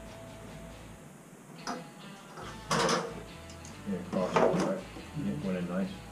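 A short clank about three seconds in, with a fainter click before it, then a man's voice in brief bursts.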